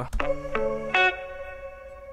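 Electric guitar sample playing back in a beat: a few plucked notes in quick succession, then one note that rings on and fades.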